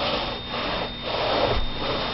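Steam cleaner worked over a stone hearth: a rushing hiss of steam and scrubbing that swells and fades twice, in strokes.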